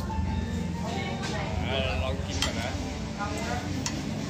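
Eatery ambience: a steady low rumble under voices and a short snatch of tune, with a couple of sharp clicks of cutlery against a plate in the second half.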